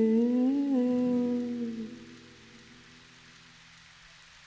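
A singer's voice holding the song's final note with no words, its pitch dipping and then rising a little before it fades out about two seconds in. Faint steady tones linger briefly after it, then only low hiss.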